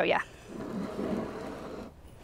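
Glazed ceramic planter bowl being rotated on a wooden tabletop: a steady scraping of pot base against wood lasting about a second and a half, stopping abruptly.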